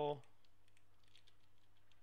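Faint, light clicks of a computer keyboard, a few scattered taps.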